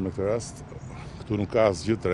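A man's voice in two short, drawn-out utterances with a gliding pitch, from the middle of a spoken statement; no other sound stands out.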